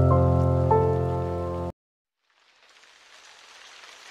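Background music of sustained, soft chords that cuts off suddenly a little under halfway in; after a brief silence a steady hiss fades in and slowly grows.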